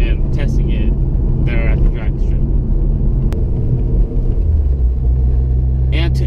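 Honda Civic Si's four-cylinder engine droning steadily at cruise, heard from inside the cabin. About four seconds in, the drone dips and settles into a lower, steadier pitch.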